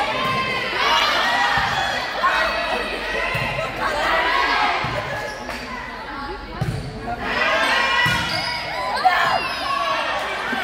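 Volleyball rally sounds in a school gym: the ball being struck and thudding every second or two, sneakers squeaking on the court, and players and spectators calling out.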